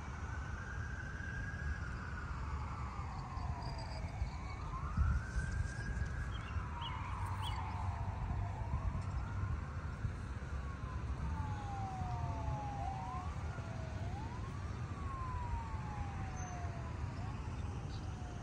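An emergency vehicle siren wailing, its pitch rising and falling in slow sweeps about every four seconds. After about eight seconds the sweeps quicken and overlap. A steady low rumble runs underneath.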